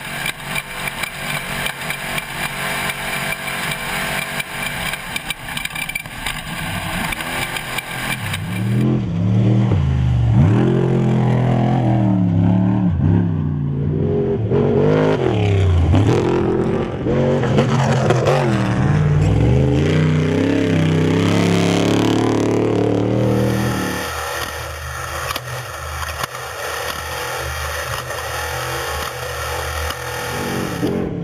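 Off-road race truck engine. First it is heard from inside the cab under a dense rattle and clatter from the rough ride. From about nine seconds in, the engine revs loudly, rising and falling in pitch as a truck accelerates past, and in the last few seconds it settles into a steadier drone.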